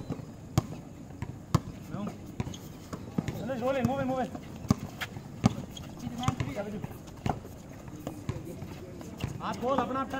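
Basketball dribbled on an outdoor concrete court: a sharp bounce every second or so, unevenly spaced, with players' shouted calls about three to four seconds in and again around six seconds.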